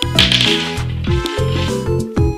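A pair of dice thrown onto a hardwood floor, clattering briefly near the start. Background music with a repeating, pulsing bass line runs throughout.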